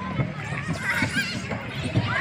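Children shrieking and squealing at play, short high calls over the chatter of a playground crowd.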